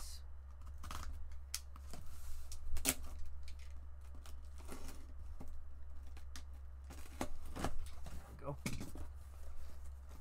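Cutting and opening a sealed cardboard case of trading-card boxes: a blade slicing through packing tape and cardboard, with scattered short clicks and scrapes as the flaps are worked open, the strongest about three seconds in.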